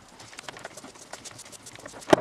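Rusty keyed chuck of a Black & Decker DNJ 62 drill being spun off its threaded spindle by hand: a quick run of light, irregular metal clicks and ticks.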